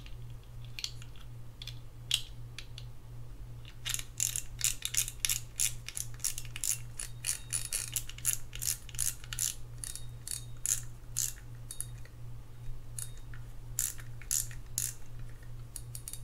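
Front drag of a Shimano FX4000FA spinning reel clicking as the drag knob is turned and the drag tested. A few scattered clicks come first, then from about four seconds in a fast, even run of about four clicks a second.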